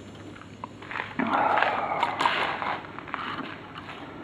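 A small water sample poured out of a plastic test tube, splashing onto a concrete floor for about a second and a half, starting about a second in.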